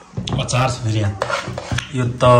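A metal spoon scraping and clinking against a metal cooking pot as cooked food is stirred and served out of it, in a run of sharp clinks.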